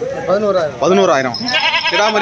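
Goats bleating, several calls one after another, the last one wavering with a quaver near the end.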